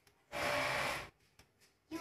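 A single short, breathy huff of under a second, with near silence around it.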